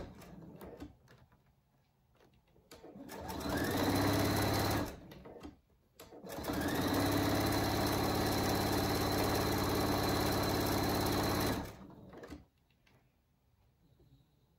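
Pfaff Creative 4.5 sewing machine stitching a folded cotton fabric collar strip: a short run that builds up speed, a pause, then a steady run of about five seconds before it stops. Light clicks fall in the quiet stops between runs as the fabric is repositioned.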